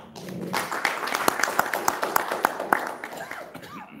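Audience applauding: a burst of many hands clapping that starts about half a second in and thins out near the end.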